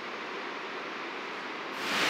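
Steady rushing of a waterfall heard through the forest, a constant even hiss that swells louder and brighter near the end.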